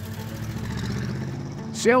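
A low swelling whoosh sound effect rises and fades over soft background music, then a man's voice says "Sales" near the end.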